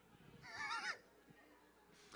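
A brief high-pitched, wavering laugh from a person, about half a second long and starting about half a second in, much fainter than the sermon speech around it.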